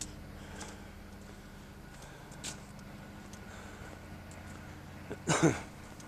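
A man's short laugh near the end, over a steady low hum with a few faint clicks.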